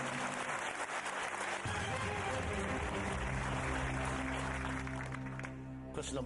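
Studio audience applauding over game-show music; a low, held synth chord comes in about one and a half seconds in. The applause dies away near the end while the chord carries on.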